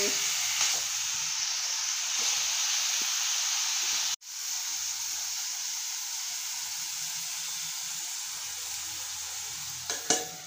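Bathua greens frying in a small kadhai on a gas stove: a steady sizzle, with a spoon stirring them at first. The sizzle breaks off for an instant about four seconds in, then carries on slightly quieter.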